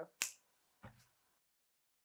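A single sharp finger snap, followed about half a second later by a faint soft knock.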